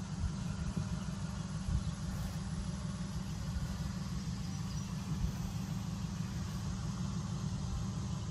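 Outdoor ambience: a steady, fluttering low rumble with a faint hiss above it.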